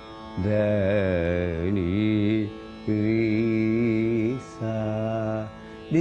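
A man singing a descending Carnatic phrase of raga Lalita in three held phrases. The first phrase carries a shaking, oscillating ornament (gamaka) on its notes.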